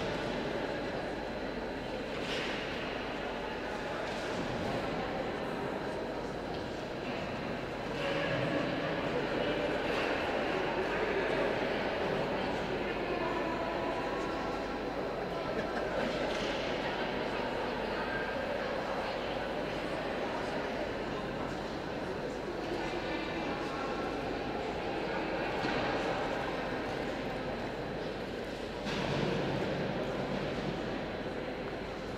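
Indistinct background chatter of people in an ice rink hall, over a steady low hum.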